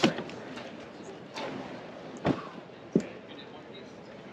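23ZERO Armadillo X2 hard-shell rooftop tent being pushed closed: a sharp clunk at the start, then two shorter thumps a little past two and about three seconds in as the shell comes down shut.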